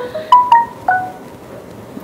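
Chime notes, about four struck in quick succession in the first second, each ringing briefly and fading, followed by a faint hiss.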